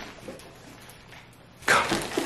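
A quiet pause with only faint room sound, then a man's voice starting near the end.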